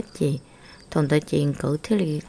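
A voice narrating in Hmong, with a short pause about half a second in where a faint high chirping is heard.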